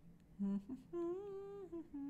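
A woman humming to herself with her mouth closed: a short low note, then a longer held note, then a lower held note near the end.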